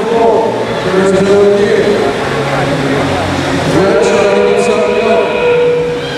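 A voice calling out loudly over steady background noise in a large hall.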